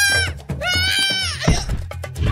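Two long, high-pitched wailing cries from a cartoon voice, each rising, holding and then falling away. A low thud follows about one and a half seconds in, as a body hits the sand.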